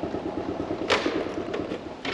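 A small motorcycle engine idling with a steady, rapid putter. One sharp click comes about a second in.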